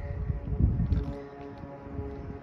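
Soft background music with sustained held notes, with wind rumbling on the microphone.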